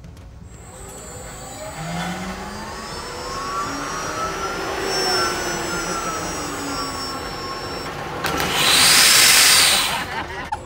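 Zipline trolley running along the steel cable: a whirring whine that grows louder, rising and then falling in pitch as the rider passes. Near the end, a loud rushing hiss.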